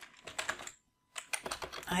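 Computer keyboard typing: a quick run of keystroke clicks, a short pause just under a second in, then another run of keystrokes.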